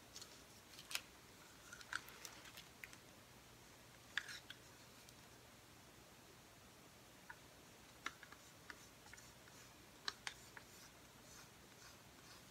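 Faint, scattered sharp clicks and light taps: a wooden craft stick scraping paint out of a small cup and knocking against the rim of a plastic measuring cup. The loudest clicks come about a second in and just after four seconds.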